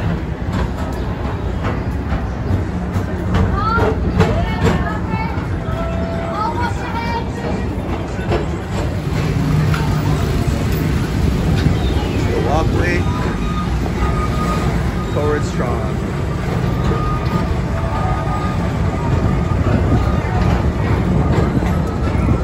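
Tomorrowland Transit Authority PeopleMover car running along its elevated track: a steady low rumble, with scattered voices in the background.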